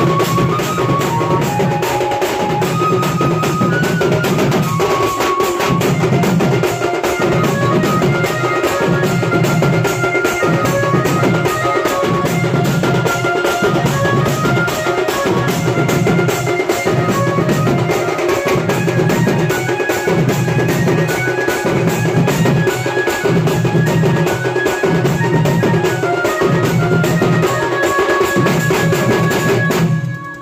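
A Bengali shing bajna drum troupe playing a fast, steady drum roll, with a deep beat swelling about once a second and a high melody line of held notes above the drums.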